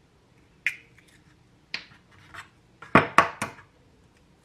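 Egg being cracked: a few light clicks, then three sharp taps in quick succession about three seconds in.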